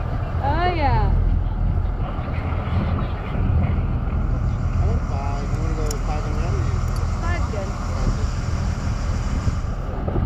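Steady low rumble of a boat's engine running, with wind on the microphone.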